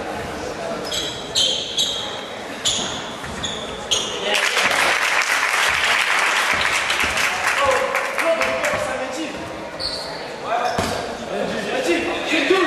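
Basketball game sounds echoing in a sports hall: sneakers squeaking on the wooden court several times in the first few seconds and again near the end, the ball bouncing, and voices. In the middle a stretch of crowd noise with many sharp claps or bounces.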